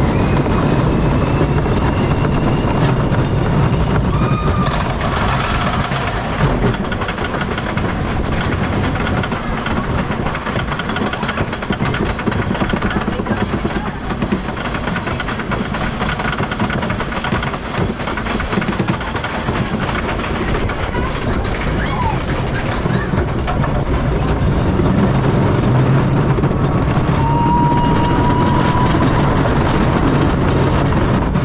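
Wooden roller coaster train running on its wooden track: a loud, continuous rumble and rattle of the wheels, dipping a little in the middle of the ride.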